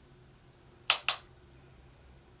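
Two quick, sharp clicks about a fifth of a second apart, about a second in, as a makeup brush and a hand-held highlighter compact are handled together.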